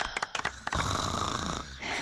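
A few people clapping quickly, dying away about half a second in, then two long snores from women passed out face-down at a dinner table, in an animated cartoon's soundtrack.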